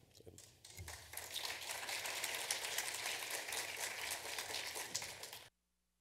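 Audience applauding, starting about a second in and cut off suddenly near the end.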